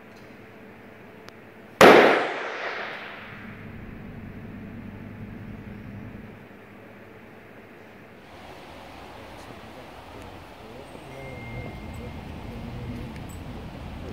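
A latex party balloon bursting once, a sharp pop about two seconds in, followed by the room's reverberation dying away over about a second. It is an impulse-response recording on a phone, of poor audio quality, which the recordist puts down to having covered one of the phone's microphones by mistake.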